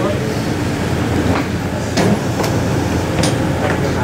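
Shuttle bus engine running with a steady low rumble, with a few sharp knocks, such as luggage and feet on the bus floor and door, over it.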